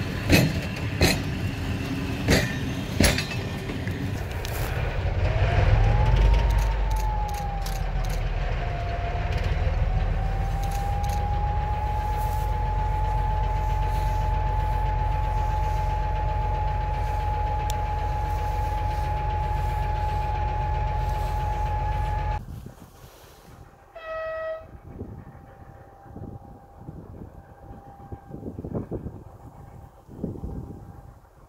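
Freight wagon wheels clack over rail joints a few times. Then an ST44 diesel locomotive's engine, a Kolomna two-stroke V12, works under power with a deep rumble and a steady high whistle that rises about five seconds in and holds. The sound cuts off abruptly about three-quarters of the way through, followed by a short, faint horn-like note.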